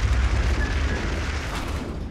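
Trailer sound-design boom: a deep, loud rumble with a hiss on top, the tail of a hit, dying away slowly.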